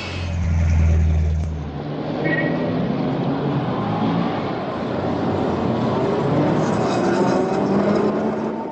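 Loud road-traffic noise, cars and engines going by in a dense, steady din. A heavy low engine rumble fills the first two seconds, with a short high tone about two seconds in.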